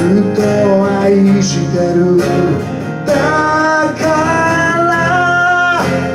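A man singing to his own acoustic guitar accompaniment, with a long held vocal line over the strumming in the second half.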